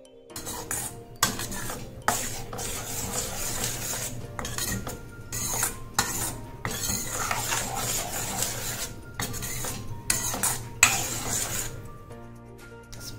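Metal spoon stirring vegetables and corn through soup in a stainless steel pan: irregular scraping and swishing strokes with short pauses, and sharp clinks of spoon on pan about a second in and near the end.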